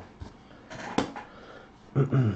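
Trading cards and foil packs being handled: a light rustle, with one sharp tap about a second in.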